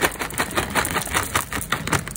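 Small hard candy-coated sweets pouring out of a plastic pouch and clattering onto a heap of more sweets: a dense, continuous rattle of many tiny clicks.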